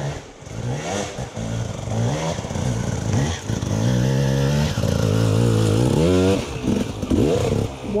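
Enduro dirt bike engine revving up and down repeatedly as the rider works the throttle over rough forest ground, growing louder as the bike comes closer.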